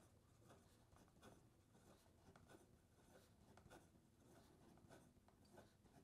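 Faint scratching of a broad fountain pen nib on paper, a string of short quick strokes as the pen is written fast.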